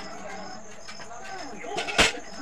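A man's voice speaking or vocalising in short, bending phrases, with a sharp click at the very end. A faint high chirp repeats about twice a second in the background.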